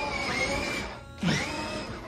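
Music playing over the whir of a toddler's battery-powered ride-on bumper car. A short voice glides steeply down a little past the middle.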